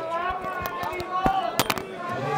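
Spectators talking among themselves, with several short sharp clicks and knocks scattered through the middle and a quick cluster of them near the end.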